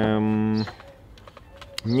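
A man's voice holding one drawn-out syllable at a steady pitch for about half a second, then a pause with a few faint, light clicks before he speaks again near the end.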